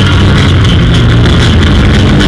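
Electric bass guitar played solo through a loud PA, a quick run of low notes.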